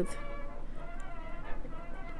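Soft background music with steady, sustained notes.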